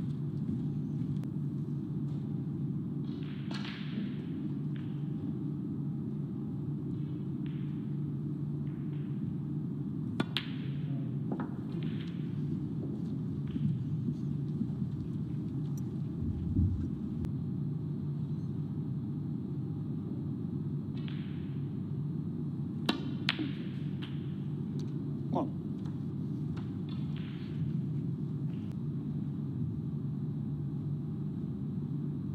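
Snooker balls clicking sharply a few times, once about a third of the way in and twice in quick succession about two-thirds through, over a steady low arena hum. A single dull thud comes midway, and faint voices come and go.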